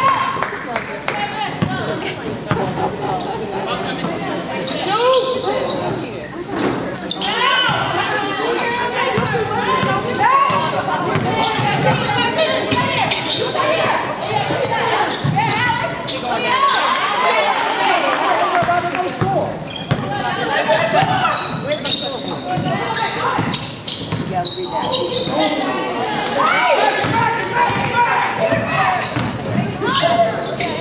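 A basketball bouncing on a hardwood gym court during play, mixed with voices calling out across the court, all echoing in a large hall.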